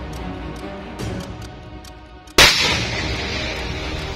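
Background music, with a single loud rifle shot about two and a half seconds in, followed by a short ringing tail.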